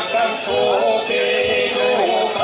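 Live traditional folk dance music with a singer holding long, slightly wavering notes over the band, and jingling percussion keeping the rhythm.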